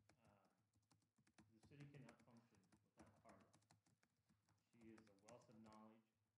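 Near silence: faint voices away from the microphone, with scattered faint clicks.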